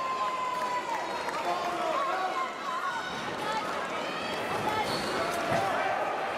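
Busy fencing-hall ambience: voices carrying around a large room, with short high squeaks of fencing shoes on the piste.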